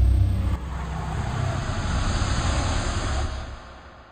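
A cinematic transition sound effect: a deep rumble with a rushing hiss. The rumble eases about half a second in, and the hiss swells, then fades away near the end.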